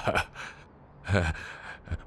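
A short, breathy vocal reaction, a gasp or sigh-like exhale, between snatches of dialogue.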